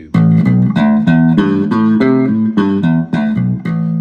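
Squier Vintage Modified Jaguar Bass Special SS short-scale electric bass, both pickups with volume and tone all the way up, played through a small Roland Cube 10GX guitar amp: a quick line of plucked notes, the last one left ringing.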